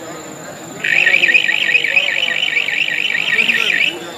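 Electronic warbling siren, its pitch rising and falling about seven times a second, starts about a second in and sounds loudly for about three seconds before cutting off, over crowd voices. It is the match-time hooter, marking the end of the half.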